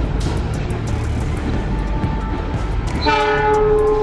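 Low rumble of trains running through the station, then about three seconds in a train horn sounds one steady, held note.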